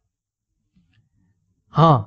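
Near silence, then a man's short spoken "ha" near the end.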